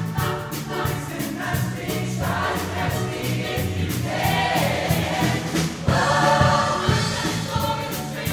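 Mixed show choir singing an upbeat pop number over an accompaniment with a steady drum beat and bass.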